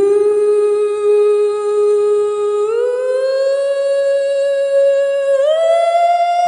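A wordless hummed vocal line: one long held note that scoops up into pitch at the start, then steps up to a higher note about two and a half seconds in and again about five and a half seconds in.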